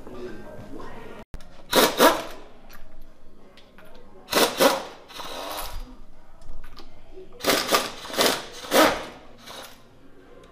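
Hand or air tool working on the raised front suspension of a Mazda MX-5 Miata, in short loud bursts, mostly in pairs, repeated about four times, as the front ride height is raised.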